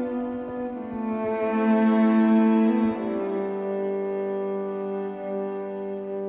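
Electric violin bowing long held notes over sustained chords, its overtones brought up by electronic processing. The notes change about a second in and again around three seconds in.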